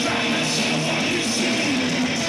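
A thrash metal band playing live, electric guitars to the fore, loud and continuous.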